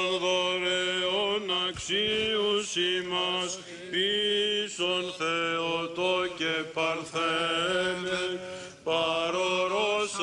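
Byzantine Orthodox chant: male voices singing a slow, melismatic hymn of the blessing service, long held and ornamented notes sung over a steady low drone (ison), with short breaks between phrases.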